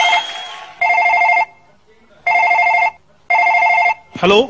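Electronic telephone ring: a trilling two-tone ring repeating in short bursts, three full rings after the end of one at the start.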